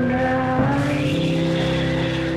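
Live indie rock band playing, with sustained, droning electric guitar notes that shift to new pitches about half a second in.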